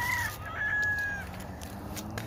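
A rooster crowing: the call wavers, then holds one long high note that stops a little over a second in.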